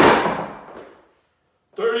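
A 33 lb iron weight plate dropped onto a rubber gym mat: one loud crash at the start, then ringing and rattling that dies away over about a second.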